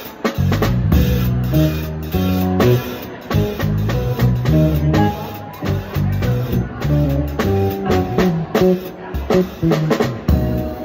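A live band playing an up-tempo funk tune: a drum kit with steady stick strokes, under a moving bass line and chords.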